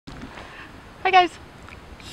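Only speech: a woman's voice saying a short greeting ending in "guys" about a second in, over faint steady background noise.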